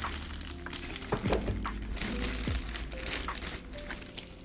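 Clear plastic bag of cake mix crinkling as it is handled and shaken out over a measuring cup, in irregular crackles.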